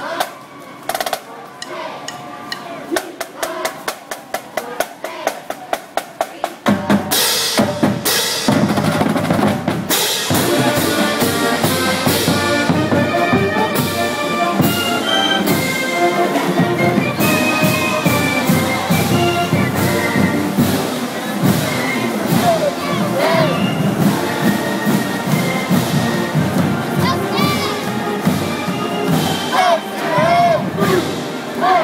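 Marching band drumline playing a cadence of snare and bass drum strokes, then the full band comes in loud about seven seconds in, sousaphones and other brass playing a tune over the drums.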